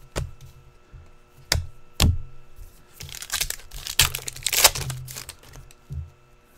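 Trading cards handled by hand: a few sharp card clicks in the first two seconds, then about two and a half seconds of dry rustling and crinkling.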